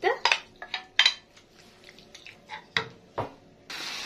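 Wooden spoon and glass bowl knocking and scraping as raw chicken livers are tipped into a hot frying pan, a few sharp clicks at the start and again about three seconds in. Near the end the livers begin sizzling in the hot ghee, a steady hiss that starts suddenly.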